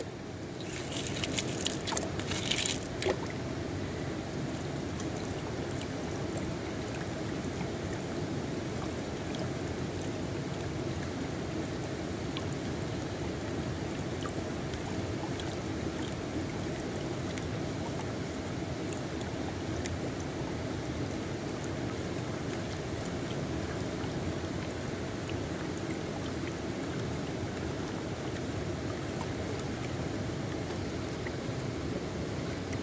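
Shallow creek water running steadily, with louder splashing and sloshing in the first three seconds as a square gold pan of gravel is shaken in the current.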